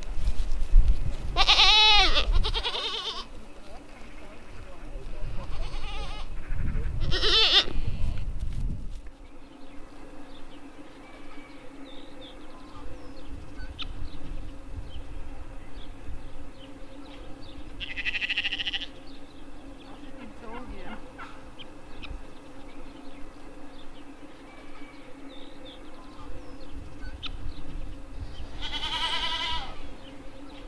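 Tauernscheck goat bleating: a loud, wavering bleat about two seconds in and several more over the next six seconds, then single bleats at about eighteen seconds and near the end.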